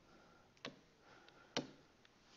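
Two faint ticks about a second apart, a stylus tapping on a tablet screen while handwriting digits.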